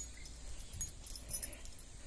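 Faint, light jingling of small metal pieces in short scattered ticks, over a low steady rumble.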